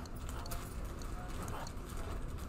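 Light clicks and taps from a stylus on a tablet screen as handwriting goes on, over a steady low room hum.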